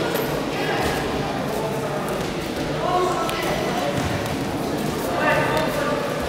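Raised voices calling out, echoing in a large sports hall, over a steady murmur of people, with a few dull thuds.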